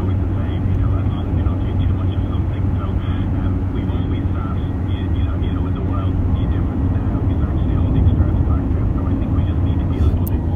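Car interior at motorway speed: a steady low drone of engine and tyre road noise heard from inside the cabin.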